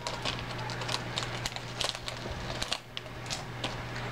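Plastic blind-bag packet crinkling and crackling in the hands as it is being opened, a quick irregular string of small sharp crackles.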